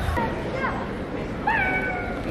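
Basketball shoes squeaking on the hardwood court: a short falling squeak about half a second in, then a longer squeak about a second and a half in.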